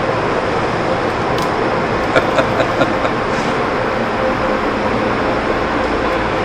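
Tunnel car wash machinery running steadily, a constant wash of spraying water and motor noise, with a few light knocks about two seconds in.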